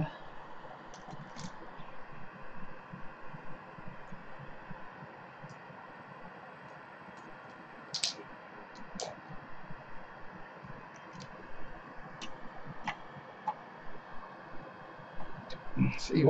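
Faint steady room hum with scattered light clicks and taps from parts being handled, the sharpest about eight seconds in.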